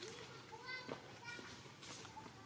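Indistinct high-pitched voices in short, broken calls, with a couple of sharp clicks.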